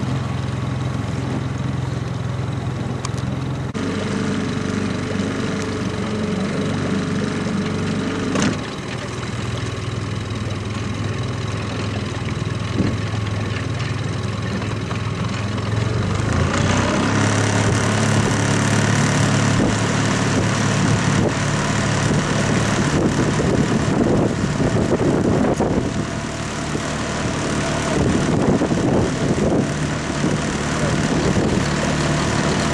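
Small outboard motor of a coaching launch running steadily, its engine note shifting a few times, about 4 and 8 seconds in, and getting louder with more water and wind noise from about 17 seconds in.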